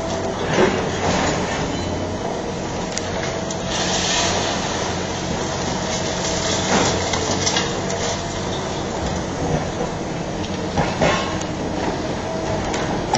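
Long-reach demolition excavator running steadily while its attachment breaks into the concrete facade of a building. Concrete cracks and debris falls in several sudden crunches, the loudest about half a second in and again near the end, with a rushing hiss of falling rubble around the middle.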